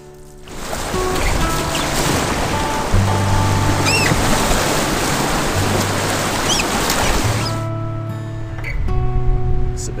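Background music with the loud rush of whitewater rapids around a canoe under it; the rushing starts about half a second in and stops a couple of seconds before the end.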